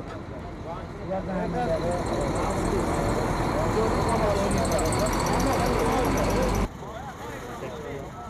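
Outdoor ambience at a road crash scene: several people talking indistinctly over the steady rumble of road traffic or idling vehicles. It cuts off abruptly about two thirds of the way through to a quieter outdoor background.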